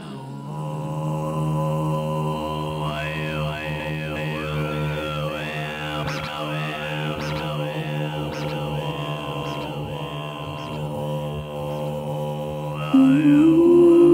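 Ambient electronic jazz from a live band. A sustained low drone chord runs under a repeating, arching higher figure, with a few light ticks in the middle. A louder held note comes in about a second before the end.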